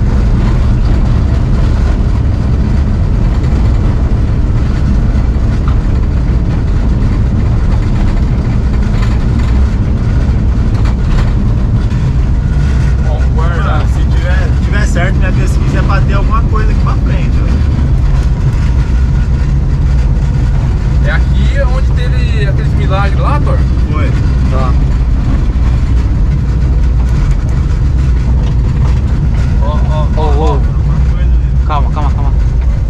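A car driving along an unpaved road, heard from inside the cabin: a steady low rumble of engine and road noise.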